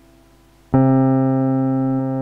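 Soundtrack music: a piano chord struck about a third of the way in, ringing on and slowly fading.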